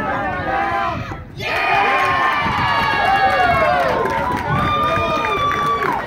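Baseball spectators cheering and yelling, many voices overlapping, swelling about a second and a half in, with one long held shout near the end, as a run scores.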